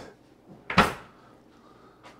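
A kitchen drawer pushed shut, one short knock about a second in, after a fork is taken out of it.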